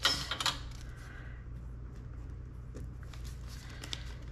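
Laminated cash envelopes in a ring binder being handled and flipped, with a brief rustle and clicks at the start and a couple of faint clicks later, over a steady low hum.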